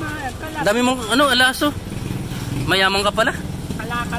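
A man's voice talking in two short stretches over a steady low rumble of motor traffic.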